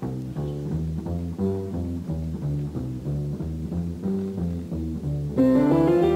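A musical scale played in unison on plucked double bass, acoustic guitar and piano, at about two notes a second. Near the end a louder, higher line joins, rising in steps.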